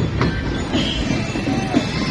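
Marching band percussion clattering under the steady noise of a large street crowd.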